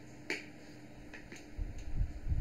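A sharp click about a third of a second in, then a few fainter clicks, with low rumbling near the end.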